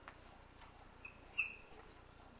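Chalk writing on a chalkboard: a light tap at the start, then two short high-pitched chalk squeaks about a second in, the second louder.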